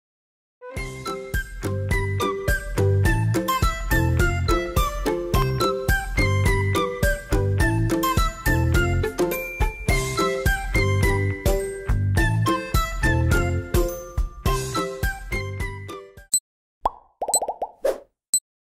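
Cheerful background music with a steady beat and bass that stops about two seconds before the end, followed by a few short cartoon-style sound effects as a number countdown begins.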